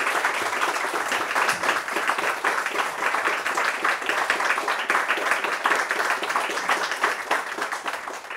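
Audience applauding steadily, many hands clapping at the end of a live talk.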